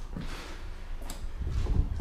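Footsteps on a gritty floor with handling noise from a handheld camera: a few soft, dull thuds and scuffs.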